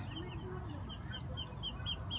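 Faint, rapid high-pitched peeping from a small bird, about five short chirps a second in an even run.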